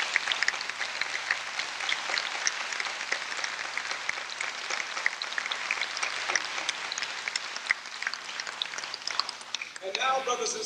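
An audience applauding: a steady round of many hands clapping that thins slightly near the end.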